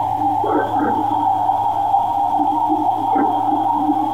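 Baby-monitor audio: a steady electronic hum and hiss, with brief faint strange sounds about half a second in and again about three seconds in. Some hear it as a voice saying "listen", others as a frog croaking.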